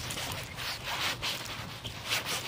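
Footsteps and clothing rustle of someone walking, with a soft swishing scrape about twice a second.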